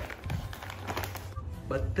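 A plastic snack bag crinkling faintly with a few light taps as it is handled and set down on a table.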